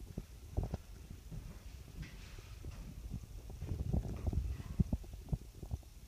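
Footsteps and handling knocks on a phone's microphone as it is carried across a room: irregular low thumps, busiest about four to five seconds in.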